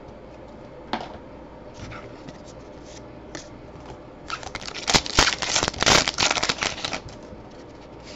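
A Topps Allen & Ginter baseball-card pack wrapper being torn open and crinkled by hand. A few light rustles come first, then a dense burst of crackling from about four to seven seconds in.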